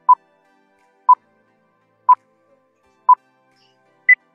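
Countdown timer beeping: four short, identical electronic beeps at the same mid pitch, one each second.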